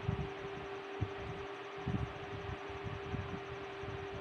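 A marker writing on chart paper, with faint irregular low knocks from the strokes, over a steady hum.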